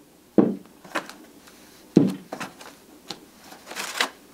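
Metal scooter clutch parts and their cardboard box being handled and set down on a tabletop: two sharp knocks about half a second and two seconds in, with lighter clicks between and a papery rustle near the end.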